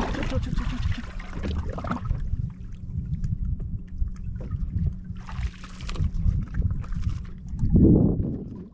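A hooked bass being fought at the surface and swung aboard: water splashing in short bursts over a steady rumble of wind on the microphone.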